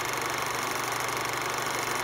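Old film projector whirring steadily, with hiss: an added sound effect under a vintage-style end card.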